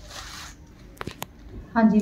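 Cloth rustling as a folded printed suit is handled and lifted, with two sharp clicks about a second in; a woman's voice says 'haan ji' near the end.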